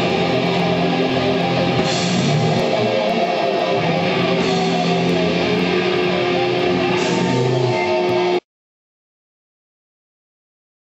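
Live death metal band playing loud, distorted electric guitars with sustained held notes. The sound cuts off suddenly about eight seconds in, leaving dead silence.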